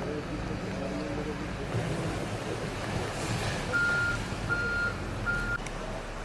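Three short, evenly spaced high electronic beeps in the second half, like a vehicle's reversing alarm, over a steady low rumble. Voices can be heard in the first couple of seconds.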